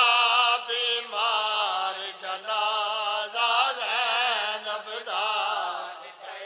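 A male reciter chanting a noha, a Shia mourning lament, in long held notes that waver up and down, phrase after phrase.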